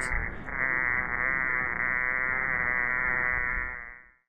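Bumblebee buzz-pollinating a tomato flower: a steady buzz on one note, near middle C, as it shivers its wing muscles to shake the dry pollen loose. The buzz fades out near the end.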